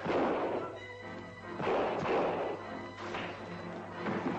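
Film-score music under fistfight sound effects: two loud crashing blows, one at the start and a second about a second and a half in.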